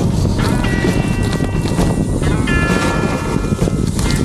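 Wind rumble on the microphone and rough-ground noise from a bike rolling fast over a muddy forest track, under background music: two held chords, the second starting about halfway through.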